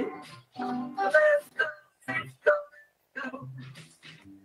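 A live band with electric guitar and a man singing into a microphone, playing a song. It is heard through a video-call link, so the sound breaks up with brief dropouts.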